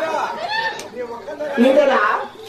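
Speech only: actors on stage speaking lines of dialogue into microphones.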